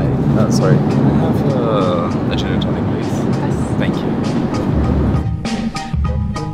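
Brief, indistinct voices over steady aircraft cabin noise. A drum-beat music track comes back in about five seconds in.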